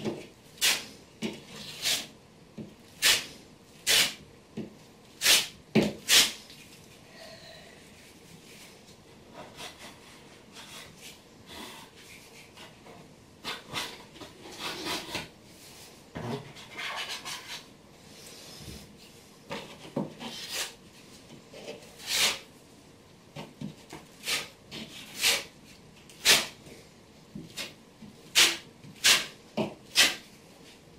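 Flat trowel scraping over waterproofing membrane pressed into mortar in a wall corner: short, sharp strokes, irregular at roughly one a second, with a stretch of softer continuous rubbing in the middle.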